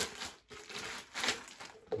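Clear plastic bag crinkling and rustling in a few short bursts as a plastic sampling beaker is handled and taken out of it.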